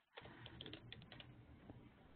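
Faint typing on a computer keyboard: a quick run of light key clicks, thinning out in the second half.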